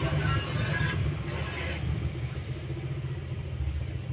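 A steady low rumble of background noise, like road traffic.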